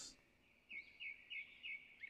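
Faint birdsong: a small bird gives four short chirps in quick succession, about three a second, over a steady thin background tone.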